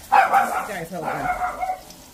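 A small dog barks sharply, then whines in a high, drawn-out tone.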